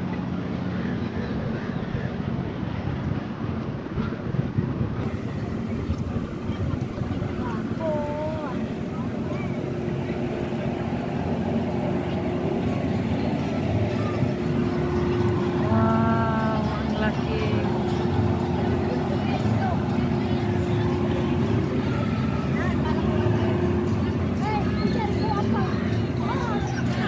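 Outdoor waterfront ambience: a steady low rumble with a constant hum underneath, and scattered voices of people nearby, including a brief pitched call about halfway through.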